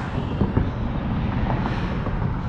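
Low, steady outdoor rumble, like wind on the microphone or distant traffic, with a few faint clicks.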